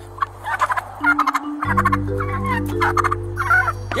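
A turkey gobbling and calling in repeated short bursts, over background music with a steady bass line that drops out briefly about a second in.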